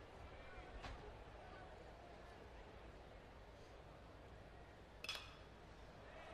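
Faint, steady stadium crowd ambience, then about five seconds in a single sharp ping of a metal baseball bat meeting a pitched ball, the contact of an easy pop-up.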